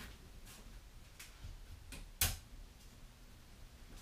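A single sharp click about two seconds in, with a few faint ticks around it: the power switch for a 240-volt supply being switched on.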